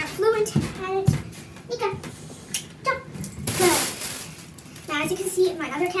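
A young voice talking indistinctly, with two short low thumps about half a second and a second in and a brief rustling hiss a little past the middle.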